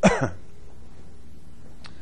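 A man coughing once, short and sharp, with a falling pitch, followed by a faint click near the end.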